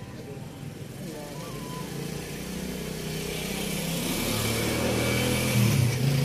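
Outdoor background with a motor vehicle's engine growing steadily louder, as of a vehicle approaching, over faint voices.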